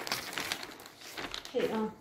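Newspaper pages rustling and crinkling as they are handled, followed by a voice calling "Hey" near the end.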